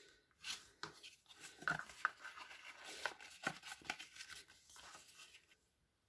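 Faint, irregular scraping strokes of a bone folder rubbed along thick cardstock to crease a fold, with light paper rustles.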